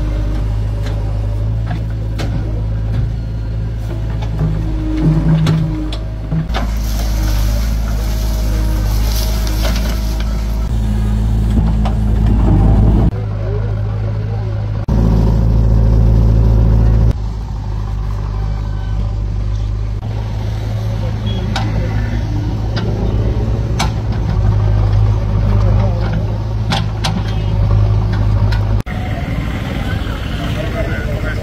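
Diesel engine of a backhoe loader running steadily while it digs soil, with occasional knocks from the bucket and arm. The sound changes abruptly several times.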